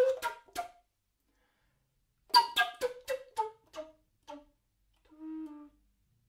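Mollenhauer Helder tenor recorder playing short, hard-tongued notes: a few at the start, then after a pause a run that falls in pitch and slows down in a ritardando, ending in one soft, low, held note near the end. The player is trying extra air in the ritardando so the harshly articulated notes do not sound dead.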